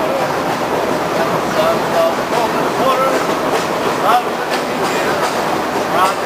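Excursion train rolling along the track, a steady rumble and clatter from the open car. A wavering tune from a man playing harmonica and acoustic guitar runs over it.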